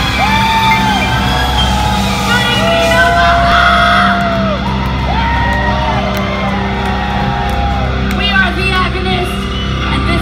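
Live heavy-metal band in a large hall: long held notes over a steady amplified drone, with yells and whoops.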